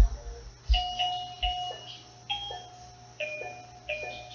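A melody of single bell-like notes played on an instrument, each note struck and fading, a few to the second, with a couple of low thumps in the first second.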